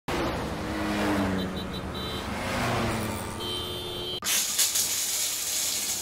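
A rushing noise with a few short high beeps, then about four seconds in a sudden, steady hiss of water spraying from a shower head.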